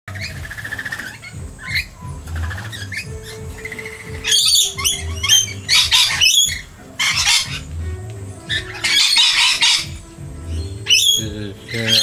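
A flock of rainbow lorikeets screeching in repeated harsh bursts, loudest through the middle and again near the end, over background music with held notes and a slow low pulse.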